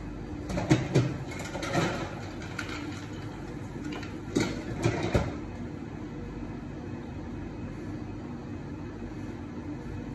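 Steady hum of an espresso machine running while a shot pours, with a handful of sharp clinks and knocks of barista tools or cups: a cluster about a second in, another near two seconds, and two or three more around four to five seconds in.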